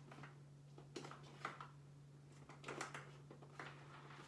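Near silence: a steady low hum, with a few faint clicks and knocks of items being handled and moved on a kitchen counter.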